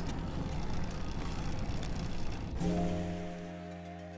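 A steady, noisy rumble, then background music enters about two and a half seconds in with a held, sustained chord.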